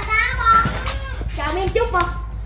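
A young child's high-pitched voice, talking or babbling without clear words, in two short stretches with a brief lull between them.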